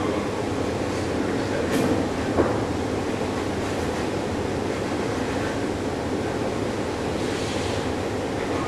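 Steady rumbling room noise throughout, with a single sharp click about two and a half seconds in and a short stretch of cloth rustling near the end as an apron is put on and tied.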